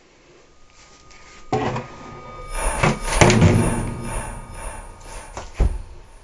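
Loud bangs and knocks: a sudden bang about a second and a half in, a loud clattering stretch through the middle, and one sharp knock near the end.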